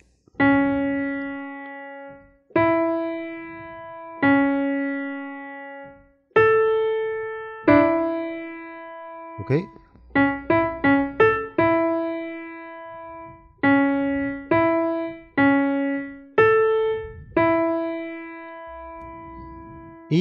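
Yamaha digital keyboard on a piano voice playing a slow single-note melody. Each note is struck and left to fade, with a quick run of short notes about halfway through.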